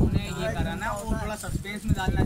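Indistinct voices talking over a large flock of pigeons on a concrete rooftop, with soft knocking and tapping from the birds pecking and moving about.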